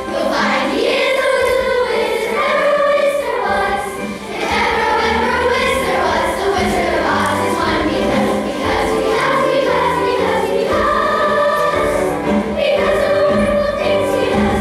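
An elementary school children's chorus singing together in a large group, steady and continuous.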